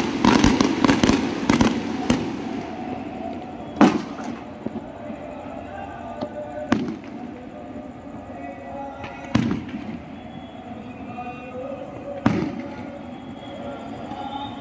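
Fireworks: a dense, rapid crackle of many small reports over the first two seconds, then four single bangs of aerial shells about three seconds apart, the first of them the loudest.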